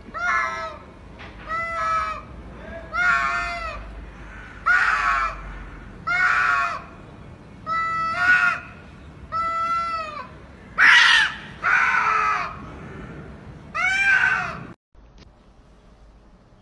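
Two cats yowling at each other in a face-off: a string of about ten drawn-out, wavering calls, each rising and then falling in pitch. The calls stop abruptly near the end.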